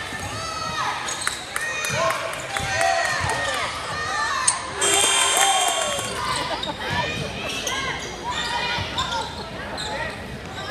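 Basketball game sound in a gymnasium: sneakers squeaking on the hardwood floor, the ball bouncing and voices in the crowd. About four and a half seconds in there is a sharp knock, followed by a shrill tone that lasts about a second.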